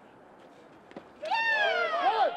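A baseball bat hits a pitch with a short crack just before one second in. Right after, several voices break into loud, drawn-out yells that fall in pitch.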